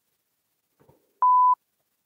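A single short electronic beep at one steady pitch, lasting about a third of a second and starting a little over a second in, surrounded by dead silence.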